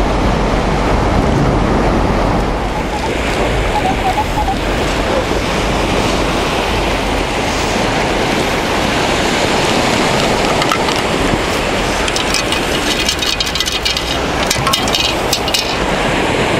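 Steady rushing of wind and surf on a beach, loud on the microphone. Near the end, a run of quick gritty clicks and hissing as sand is shaken through a metal sand scoop.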